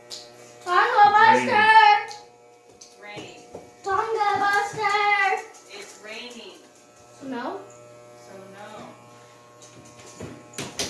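Electric hair clippers buzzing steadily while cutting short hair. Over the buzz, a child sings two loud phrases about one and four seconds in, with fainter vocal bits later.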